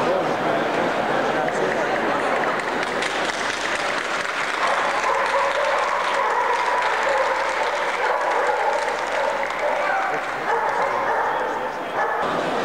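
Steady crowd hubbub of many voices mingling in a large hall, with no single voice standing out.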